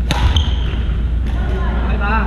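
Badminton racket hitting a shuttlecock: one sharp crack with a brief high ring just after the start, then a lighter tick a moment later. A steady low hum runs underneath.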